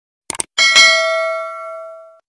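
A quick mouse-click sound effect, then a bright bell ding that rings and fades over about a second and a half: the notification-bell sound of a subscribe-button animation.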